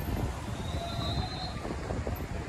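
Wind buffeting the microphone over the rumble of street traffic, with a thin high squeal lasting about a second near the middle.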